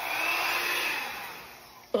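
Hair dryer with its nozzle attachment on, blowing air with a faint high motor whine, loudest at first and then fading away over the second half.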